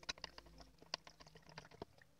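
Faint, irregular small clicks and taps of a flat wooden stirring stick against a plastic measuring jug as fertilizer solution is stirred, the clearest tap about a second in.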